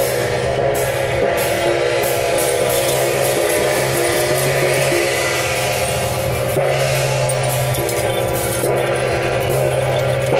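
Loud, continuous temple-procession percussion music, with drums, gongs and clashing cymbals playing without a break.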